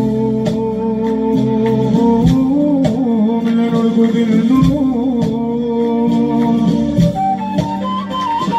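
Tunisian hadra Sufi devotional music: a lead voice sings a long melody that moves slowly in pitch over a steady sustained drone, with light regular beats.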